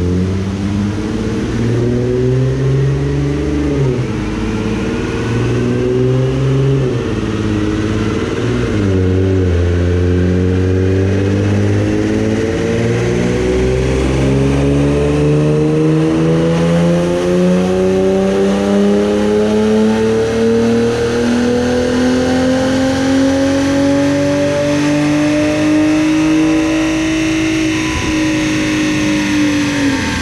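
2010 Infiniti G37's 3.7-litre V6, breathing through a cold air intake and catless exhaust, making a full-throttle pull on a chassis dyno after ignition timing was added. Engine speed dips and recovers a few times in the first ten seconds as the seven-speed automatic shifts up. It then rises steadily for about twenty seconds and drops off sharply near the end as the run finishes.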